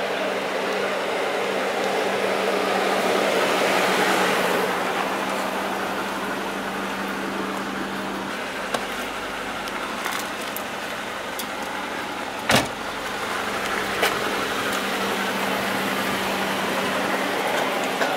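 Car and street noise: a steady low hum under a noisy wash that swells about four seconds in. There is a sharp knock about twelve and a half seconds in, with a few lighter clicks around it.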